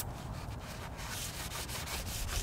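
Faint, irregular rubbing and scraping of a long cavity-wax spray wand working in the access hole of an enclosed steel frame rail as it is slowly pulled out.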